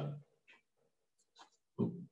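A man's voice: the tail of a spoken word, then a short low voiced grunt near the end, with faint small ticks between.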